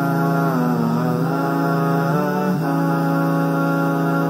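Intro music for the segment: a chant-like vocal line gliding up and down over a steady held drone note.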